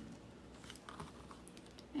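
Faint, light clicks and taps of a pen and a clear plastic ruler being handled and set down on fabric on a table, several scattered over about a second.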